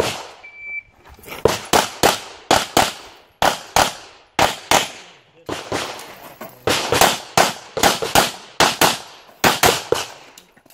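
A shot timer beeps once, then a handgun fires a fast string of shots, mostly in quick pairs. There is a pause of about a second past the middle as the shooter moves to a new position, then the firing resumes.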